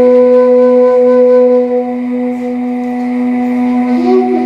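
Caval, the Romanian end-blown shepherd's flute, holding one long note in a slow doina, over a steady low drone. The note fades a little in the second half, and a higher note comes in at the end.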